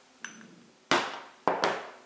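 Two sharp knocks about half a second apart, each fading quickly: a makeup jar and blush brush being picked up and knocked against a hard surface.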